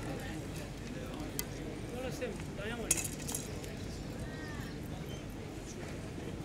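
Quiet range ambience with faint, distant voices and a few light clicks. A sharper click or clink comes about three seconds in and is the loudest sound.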